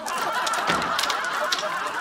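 Bead door curtain rattling as someone pushes through it: a dense clatter of beads knocking together.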